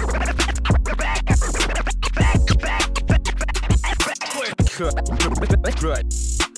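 DJ scratching a scratch sample on a turntable record that controls Serato DJ Pro: quick back-and-forth scratches with sharp cuts laid over a steady hip hop beat. The beat's low end drops out briefly about four seconds in.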